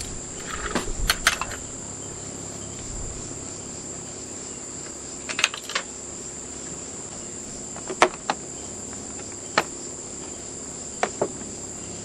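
Insects drone steadily at a high pitch. Over it come a scattering of short, sharp clicks and taps from metal tools and parts being handled on a chainsaw, the loudest about two-thirds of the way through.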